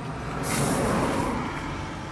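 A motor vehicle passing close by, heard from inside a car: a rushing noise that swells to a peak about a second in and then fades.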